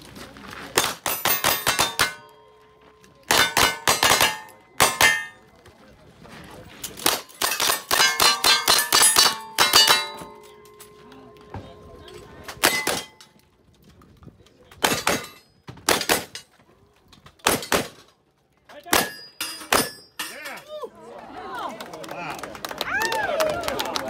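Two shooters' guns firing in rapid strings at steel targets, the hits ringing with a metallic clang after many shots. The shots come in bursts with short pauses, thinning out over the last few seconds before talk takes over.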